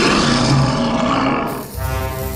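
Cartoon manticore's roar, a lion-like sound effect lasting about a second and a half before music takes over.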